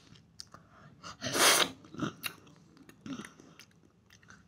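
A child's mouth sounds while eating a sour lemon: wet smacks and clicks of chewing and sucking, with one loud, short rush of breath about a second and a half in and a smaller one near the end.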